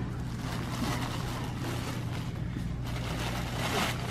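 Steady low hum and hiss of store room noise, with the rustle of a plastic bag of potting soil being lifted off a low shelf near the end.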